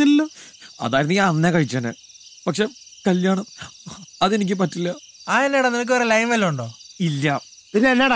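Men's voices talking in short lines, over a steady high chirring of crickets.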